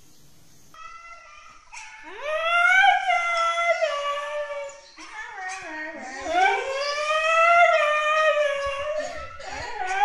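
Siberian husky howling: two long drawn-out howls that slide up in pitch and then hold, followed by shorter wavering howls near the end.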